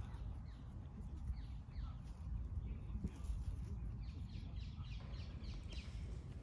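Quiet outdoor background over a steady low rumble, with faint, short, falling bird calls repeating every second or so.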